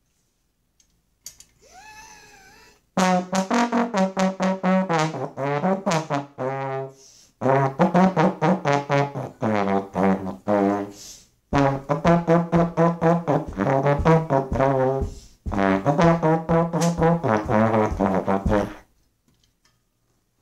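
Slide trombone played loud and close, a long run of short, separately tongued notes at about three or four a second, moving up and down in pitch in four phrases with short breaks, stopping near the end. A faint, wavering tone comes just before the first phrase.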